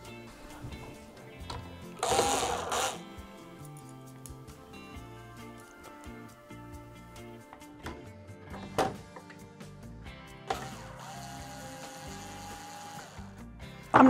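A Bosch mini cordless drill whirs steadily for about two and a half seconds near the end, backing out a drawer-handle screw, over background music. A brief loud noise comes about two seconds in.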